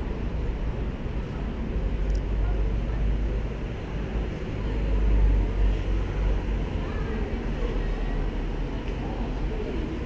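Street noise heard while walking: a steady low rumble, loudest about five seconds in, with faint voices of passers-by.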